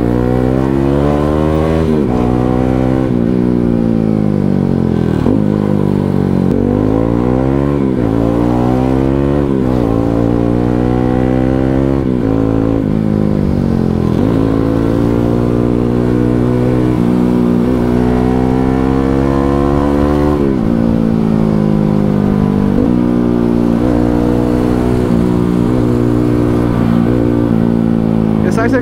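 Motorcycle engine heard from the rider's seat, revving up and easing off again and again as it is ridden, its pitch climbing and then dropping repeatedly.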